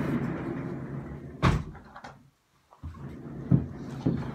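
Rummaging by hand among stored things while searching for a snuff tin: a rustling, sliding noise that fades over the first second and a half, then a sharp knock, and a softer knock near the end.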